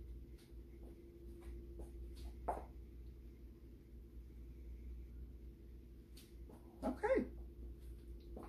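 Light knocks of glass canning jars being gripped with a jar lifter and set down on a towel, over a steady low hum. About seven seconds in, a short whimper-like cry that bends up and down in pitch.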